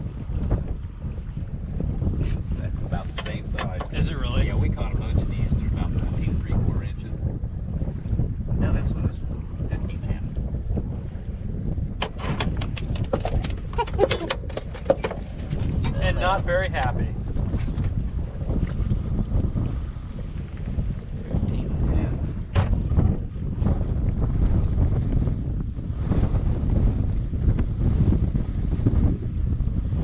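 Wind buffeting the microphone in open air, a steady low rumble, with scattered small clicks and knocks throughout.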